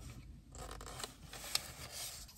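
Faint scraping and clicking of a wooden fork against a paper food tub, with one sharper click about one and a half seconds in.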